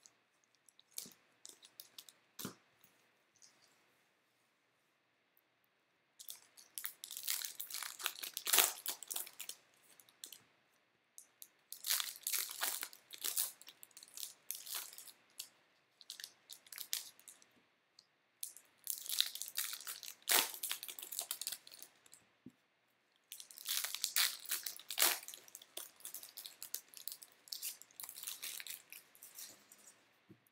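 Baseball card pack wrappers being torn open and crinkled by hand, in four bouts of crackling, with a few light clicks and taps before the first.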